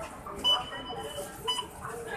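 Electronic beeps: a high beep about half a second in that holds on briefly, then a second short beep about a second later, over faint background chatter.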